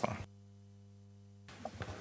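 A pause between speakers in a room: the end of a spoken word, then about a second of near silence with only a faint steady electrical hum, and faint stirrings just before the next voice.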